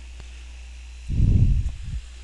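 A steady low hum and hiss from the recording chain. About a second in comes a loud, muffled low rumble lasting under a second, a puff or brush right on the microphone.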